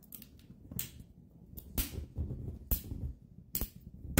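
A lipstick tube cracking and crunching as metal trimmers squeeze through it: a series of sharp cracks about a second apart.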